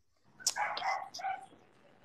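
A dog barking, several short barks starting about half a second in and dying away after about a second.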